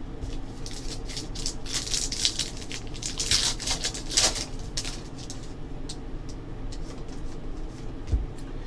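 Foil trading-card pack wrapper being torn open and crinkled, with a dense run of crackles starting about a second and a half in. Quieter handling of the paper-stock cards follows, with a few scattered clicks.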